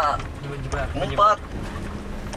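A short stretch of voices, with no words picked out, over a steady low rumble and hum.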